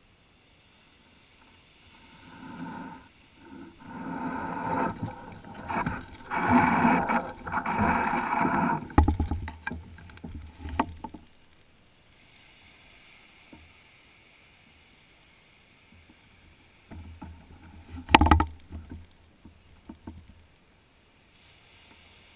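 Small sea waves washing up the sand and splashing close to the microphone: a long swelling wash through the first half, then quieter lapping, and a short sharp splash about three-quarters of the way in.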